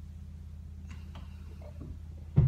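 Quiet room tone: a low steady hum with a few faint ticks, about a second in, a little later, and near the end.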